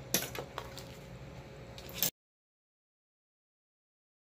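Several light clicks and knocks of small objects being handled, the loudest sharp click just before the sound cuts off abruptly to dead silence about two seconds in.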